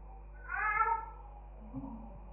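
A single short pitched call lasting about half a second, soon after the start, with a weak low sound near the end.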